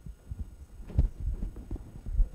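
Irregular low thuds and bumps, loudest about a second in.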